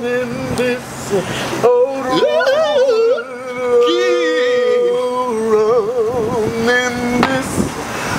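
Men singing gospel-style vocal runs: long held notes with a wavering vibrato, sliding between pitches, with short breaks between phrases.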